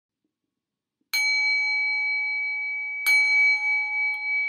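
A bell struck twice, about two seconds apart, the first strike about a second in; each strike rings on with a few clear, steady high tones.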